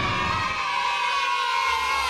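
A group of children's voices cheering together in one long held 'yay' as the closing jingle's beat stops.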